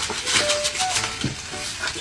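Meat sizzling in a grill pan while dry seasoning is shaken from packets with a grainy rattle, over background music.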